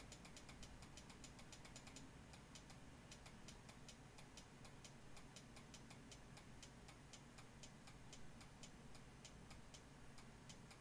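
Near silence with a faint, fast, evenly spaced ticking over a low steady hum.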